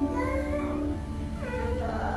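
A frightened small child whimpering and crying, one drawn-out wavering wail that weakens about halfway through and goes on more softly.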